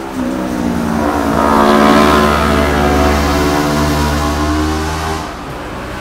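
A motorcycle passing by, its engine growing louder to a peak about two seconds in, then fading away after about five seconds.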